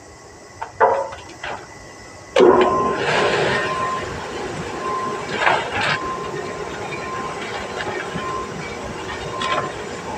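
A compost bagging machine starts suddenly about two and a half seconds in and runs steadily with a hum and hiss, as sawdust-composted cow manure pours down its hopper into a plastic sack. Before it starts there are plastic rustles and a sharp click as the sack is fitted under the spout.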